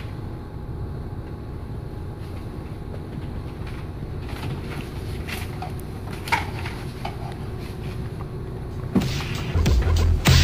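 Low, steady room rumble with a few faint rustles and clicks, as of paper being handled. About nine seconds in, music with a heavy bass beat starts.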